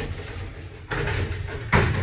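Lift car doors sliding shut with a steady rushing noise, ending in a sharp knock as they close, near the end.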